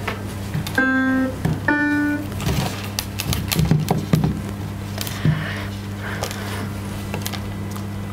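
Two short electronic piano notes from a laptop's on-screen piano, about one and two seconds in, the second a little higher. Each note is triggered by a touch on a banana wired to a Makey Makey controller kit. Light knocks and handling clicks follow over a steady low hum.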